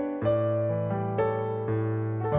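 Slow, gentle piano accompaniment from a backing track playing sustained chords, with new chords struck about once a second and no voice.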